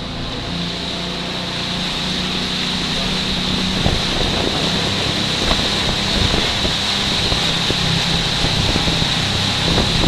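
Motorboat engine running steadily as the boat cruises along the river, growing slightly louder, with wind buffeting the microphone from about four seconds in.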